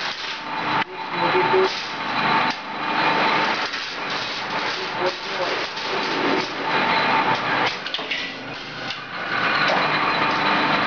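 Power press and strip-feeding cut-to-length line running on a factory floor: dense machine noise with a steady whine through it and a few sharp knocks.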